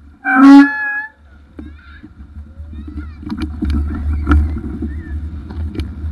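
A loud honk from a bicycle horn, lasting under a second with a slight upward bend at the end. Then the low rumble and scattered rattles of the bike riding on, with wind on the microphone.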